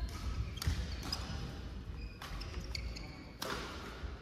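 Badminton rally: several sharp racket strikes on the shuttlecock, roughly a second apart, the loudest near the end, with short high squeaks of shoes on the court floor.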